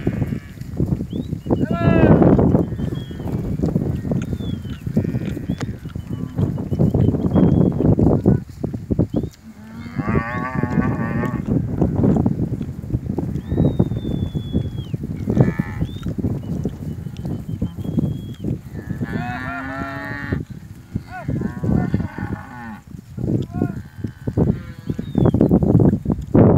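A herd of Brangus and Red Brangus cows with calves mooing repeatedly as they walk, one call after another, with long calls about two, ten and twenty seconds in.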